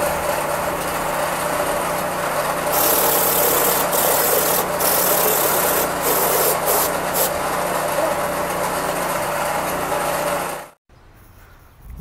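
Construction machinery running steadily: a constant low motor hum under a rough, rasping noise, with a louder hiss from about three seconds in that drops out briefly several times. It cuts off abruptly shortly before the end.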